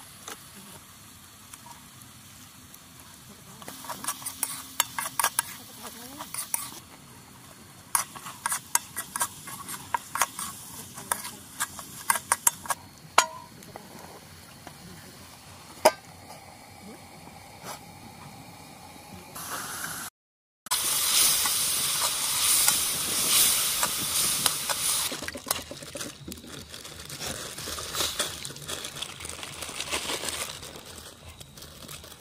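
Steel cookware clinking and scraping as a pan and its lid are handled over a wood campfire. Then comes a loud sizzle from the hot pan that dies down over a few seconds, with more clinks.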